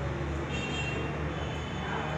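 Steady low background rumble, with faint steady tones above it and a tone falling in pitch near the end.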